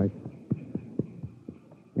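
Radio-drama sound effect of a horse's hooves plodding through snow, soft even thuds about four a second.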